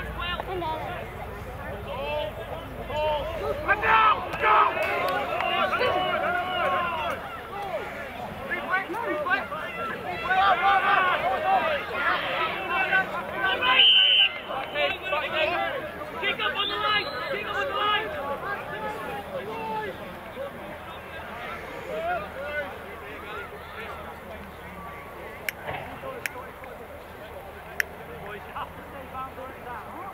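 Rugby players and touchline spectators shouting and calling over one another, loudest in the first half and quieter in the last third. A brief high steady note sounds about halfway through.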